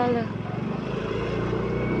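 Small motorcycle engine running steadily at low speed, heard from the rider's seat.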